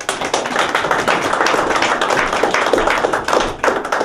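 Audience applauding: dense, irregular clapping that dies away near the end.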